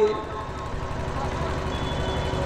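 A steady low rumble with a faint even hiss underneath, left bare in a pause in the speech.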